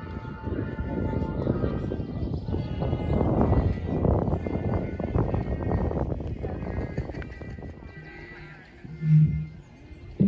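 Wind buffeting the microphone with a dense, fluttering low rumble that dies down after about seven seconds, followed by a brief, louder low sound about nine seconds in.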